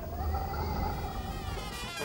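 Quiet brass band music, with long held notes from trumpets and other brass.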